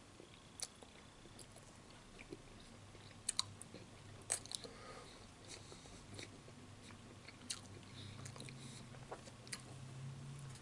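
A man chewing a mouthful of German sausage in a bun with peppers and onions, close to the microphone: faint chewing with scattered sharp mouth clicks, over a low steady hum.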